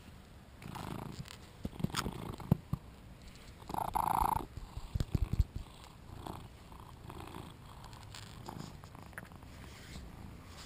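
British Shorthair cat purring close to the microphone while being stroked, with a few sharp knocks as it nuzzles right up to the camera.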